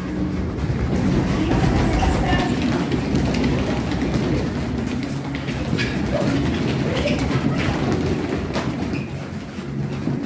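Rumbling, clattering noise of a class of children stepping and shuffling together on a tiled classroom floor while dancing, loudest in the first few seconds, with dance music faintly beneath.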